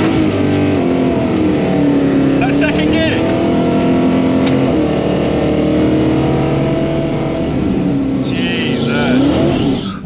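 Chevrolet Nova SS drag car's engine, heard from inside the cabin, revved up at the start and held at high revs for several seconds. Near the end the pitch dips and climbs again, then the engine drops off suddenly. This is typical of a burnout to warm the tyres.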